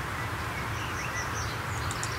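Songbirds calling with scattered short, high chirps over a steady low background hum.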